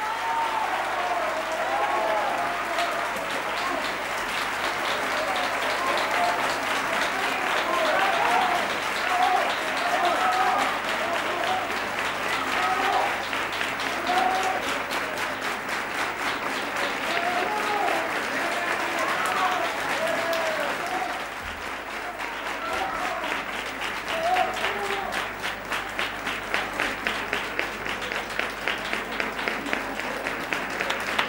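Studio audience applauding at the end of a song, with voices shouting over the clapping. In the last several seconds the clapping falls into an even rhythm, clapping in time.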